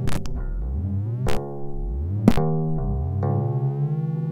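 Modular synthesizer improvisation: layered sustained electronic tones over repeated rising sweeps in the bass, punctuated by sharp clicks about once a second.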